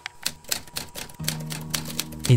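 Typewriter keys striking in a quick, irregular run of sharp clicks, typing out a word, over background music whose low sustained notes come in about a second in.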